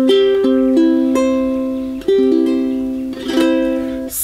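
Aostin AT100 tenor ukulele strung with fluorocarbon fishing line, played fingerstyle: a few single plucked notes, then a closing chord about two seconds in that rings and slowly fades, with a light strum near the end.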